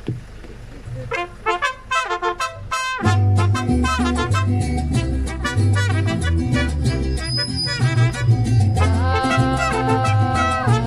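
Mariachi trumpets opening a number. About a second in they play a run of short, quick notes. About three seconds in the full band comes in with a bass line and rhythm under the trumpets, and near the end the trumpets hold long notes.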